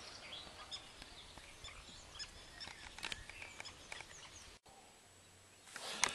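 Faint birdsong, scattered short high chirps over quiet outdoor ambience, cut off suddenly about four and a half seconds in, leaving near silence.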